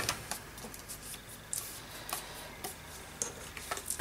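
Paper and cardboard pieces being handled and set down on a hard tabletop: a few light, irregular clicks and taps with faint rustling.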